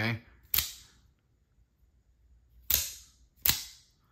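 Heretic Knives Cleric II out-the-front automatic knife firing and retracting its spring-driven double-edged blade: three sharp metallic snaps, the first about half a second in and the last two under a second apart near the end.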